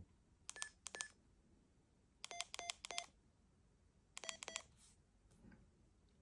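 Key beeps of a Yaesu FT-70D handheld radio as its keypad is pressed to enter a memory channel name: short electronic beeps in three quick groups, two higher-pitched beeps and then two runs of three lower ones.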